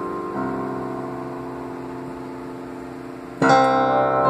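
Solo digital piano playing a slow piece: a soft chord comes in shortly after the start and is held, fading, for about three seconds, then a louder chord is struck near the end.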